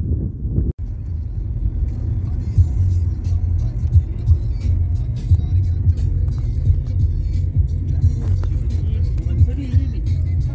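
Steady low rumble of a car driving on the road, heard from inside the cabin.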